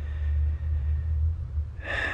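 A man's breath on a close microphone during a pause, heard as a low rumble, with a short intake of breath near the end.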